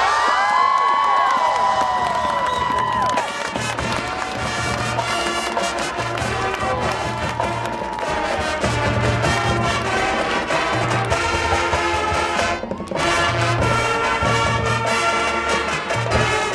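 High school marching band playing: brass holding sustained chords over pulsing low brass and drums, with a brief break about three-quarters through. A crowd cheers and whoops over the first few seconds.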